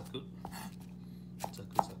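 Kitchen knife cutting through raw butterbur buds (fukinoto) onto a wooden cutting board: a few crisp chopping strokes, the loudest near the end.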